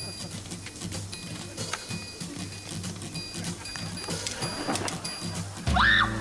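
Comedic background music cue with a quick, regular beat, ending in a sudden louder sound that rises sharply in pitch.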